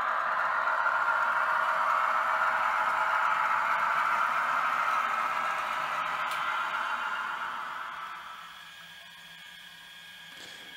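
Model train running along the track with a steady whirring rumble from its motor and wheels. It fades away about eight seconds in as the train slows and stops.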